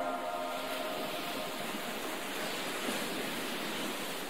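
Gentle ocean surf washing onto a beach: a steady hiss of small waves that swells a little in the middle.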